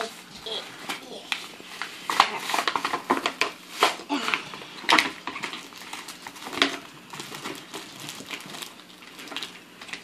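Plastic toy packaging crinkling and tearing as a sticky-hand toy is unwrapped by hand, in a quick, irregular run of crackles and rustles. The loudest rustling comes between about two and five seconds in.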